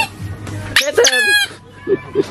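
A chrome bicycle bulb horn squeezed by hand: the tail of one honk right at the start, then a longer honk about a second in, its pitch wavering.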